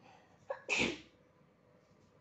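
A person sneezes once, a little before the one-second mark: a brief catch followed by one short, loud burst.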